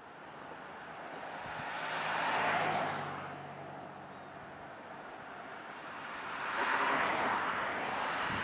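Cars passing by on a road: the tyre and engine noise of one car swells to a peak about two and a half seconds in and fades, then another car approaches and passes near the end.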